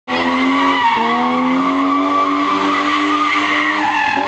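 Car doing a burnout: tyres squealing in one long, steady tone while the engine is held at high revs, the pitch dipping briefly about a second in.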